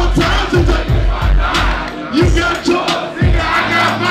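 Hip-hop track playing loud through a concert PA, with deep bass hits, as the crowd shouts along.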